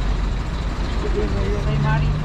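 Steady low rumble of road traffic, a heavy vehicle going by, with a faint voice near the end.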